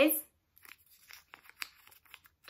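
A small folded slip of paper being unfolded by hand, giving faint, irregular crinkles and crackles. It follows the end of a woman's spoken word at the very start.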